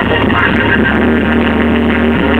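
Rock band playing live, with electric guitar and bass guitar over a steady full-band groove.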